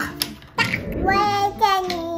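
A young child's voice making a drawn-out, high sing-song sound, starting about a second in.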